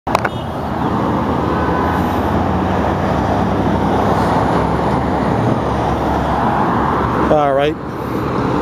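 Steady road traffic at a city intersection: cars passing, with continuous engine and tyre noise.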